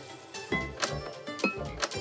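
Light background music with about four sharp clicks spread through it, from chess pieces being set down and a chess clock's button being hit in a quick game.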